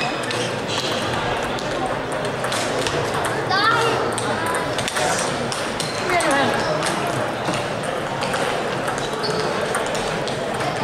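Table tennis balls clicking off bats and tables in a busy sports hall: scattered sharp clicks throughout, over a steady background of crowd chatter.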